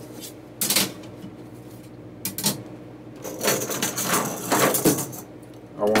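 Pencil and ruler working on drafting paper: a brief scrape under a second in, a couple of light clicks a little past two seconds, then a longer stretch of pencil scratching from about halfway through.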